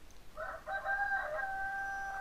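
A pitched animal call in the background: a few short notes, then one long held note that drops in pitch at the end.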